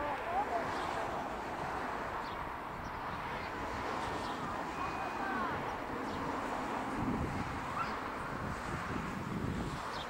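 The twin radial piston engines of a Douglas C-47 Skytrain run at takeoff power as it starts its takeoff roll, heard at a distance as a steady drone that grows heavier about seven seconds in. A few bird chirps sound over it.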